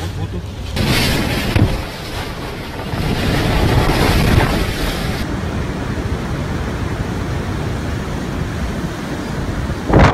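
Storm wind buffeting the microphone over heavy rain and rushing water: a loud, steady roar that changes abruptly about a second in and again about five seconds in.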